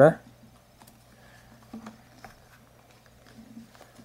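Faint handling rustle and a few soft clicks as the elastic closure band is stretched around the outside of a leather Targus Truss tablet case.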